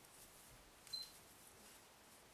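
Near silence: room tone, broken by one short, sharp click about a second in.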